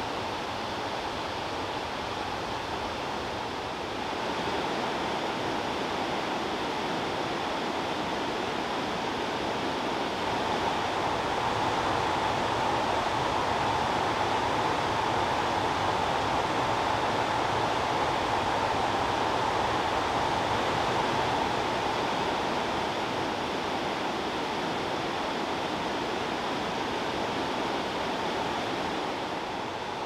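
Rushing white water from river rapids and falls, a steady, even noise that swells a little from about four seconds in and eases back after about twenty seconds.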